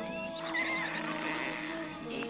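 Film soundtrack: a light, steady music score with high, wavering squeals from the troll creatures.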